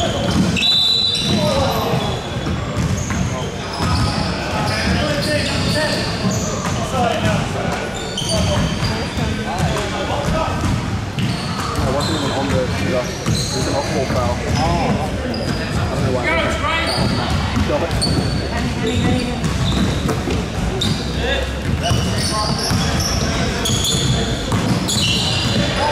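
Live indoor basketball game sound in a large, echoing gym: a basketball bouncing on the hardwood court, sneakers squeaking in short high chirps, and players calling out to one another.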